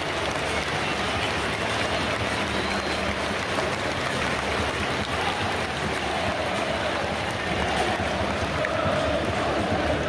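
Football stadium crowd cheering and applauding in a steady roar as the teams walk out. From about six seconds in, a sustained sung chant rises out of it.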